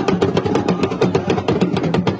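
Yoruba talking drums (dundun) and hand percussion played live in a fast, steady rhythm of rapid strikes, with the drummers chanting along.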